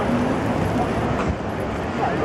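Outdoor crowd ambience: a steady blend of many distant voices and street-like rumble, with no single voice standing out.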